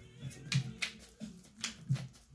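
A tarot deck being shuffled by hand. The cards make a series of short, sharp snaps, about five of them over two seconds.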